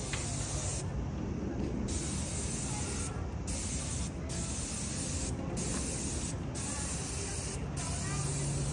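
Airless paint spray gun hissing as it sprays paint onto brick, the hiss breaking off briefly about six times as the trigger is let go. A steady low rumble runs underneath.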